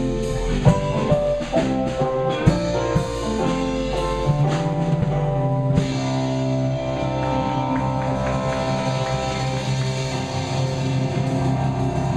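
Live rock band playing an instrumental passage on electric guitars, bass, drums and keyboard. The drum strokes stop about halfway through, leaving held guitar and keyboard notes ringing.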